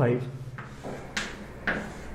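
Chalk writing on a blackboard: a few short, sharp chalk taps and scrapes as digits are written, the two clearest in the second half.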